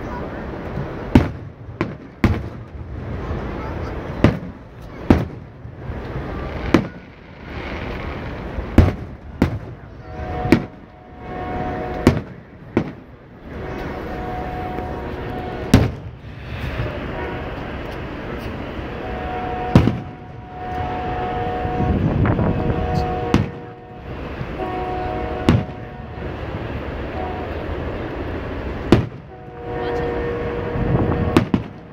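Aerial fireworks shells bursting overhead: more than a dozen loud booms at irregular intervals, a second or a few seconds apart.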